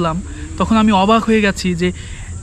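A man's voice talking, over a faint steady high-pitched hum.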